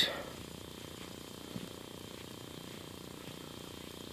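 Faint, steady rustling and crackling of a crowd of fiddler crabs scurrying through shoreline grass and shelly sand.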